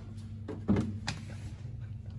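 A dull thump about two-thirds of a second in, then a short sharp click, over a steady low hum.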